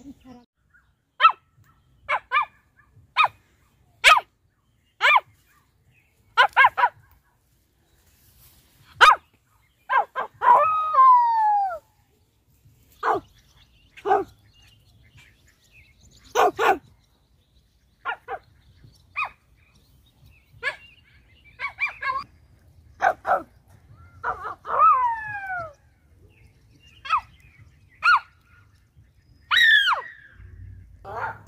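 An animal calling loudly and repeatedly: short, sharp calls about once a second, broken by two longer calls that slide downward in pitch.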